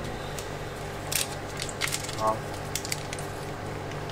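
A person chewing a mouthful of sausage, with a few short, sharp mouth clicks over a steady low hum, and a brief 'oh' of appreciation about two seconds in.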